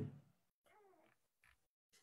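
Near silence, with one faint, brief, wavering pitched sound about a second in.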